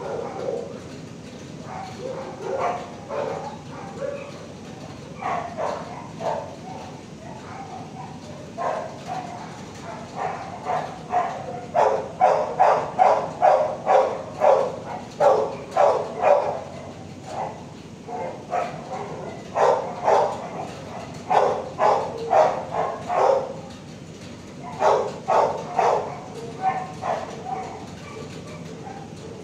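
Dogs barking in a shelter kennel block: scattered barks at first, then runs of rapid barking, about three barks a second, through the middle and near the end.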